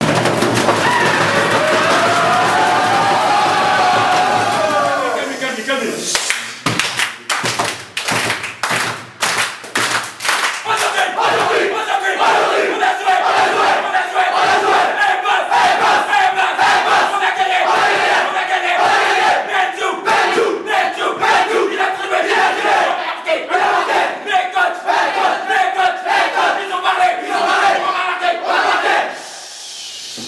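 A huddled football team's voices in a team war cry. Sharp rhythmic beats start about six seconds in, then the group goes into a sustained chant in unison with the beats still running under it. The chant drops away just before the end.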